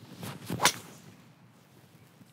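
A golf driver swing: a short rising whoosh of the club through the air, then one sharp crack as the Titleist TSR driver head strikes the ball off the tee, about two-thirds of a second in.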